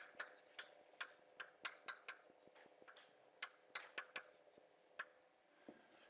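Chalk writing on a blackboard: faint, irregular taps and short strokes, with a pause of about a second midway.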